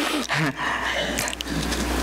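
Papers rustling and crackling as they are handled close to a lectern microphone, with a brief murmur of voice early on, over a steady low hum.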